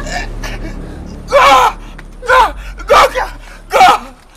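A girl crying out in distress, four short high-pitched gasping cries in the second half, during a struggle.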